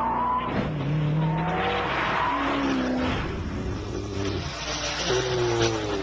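Koenigsegg supercar's supercharged V8 being driven hard, its engine note rising and falling several times, over a steady rush of tyre and wind noise.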